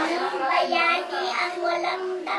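A high voice in a sing-song, half-sung delivery, with drawn-out held notes.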